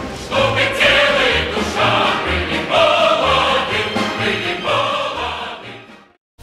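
Choral music: voices singing long held phrases over low accompaniment, fading out in the last second.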